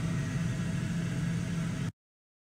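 A steady low mechanical hum under an even hiss, cutting off abruptly just before the end.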